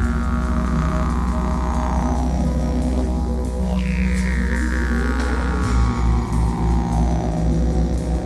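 Didgeridoo played live: a deep, steady drone with sweeping overtones that fall in pitch every couple of seconds. A little past halfway the drone breaks into a rhythmic pulse.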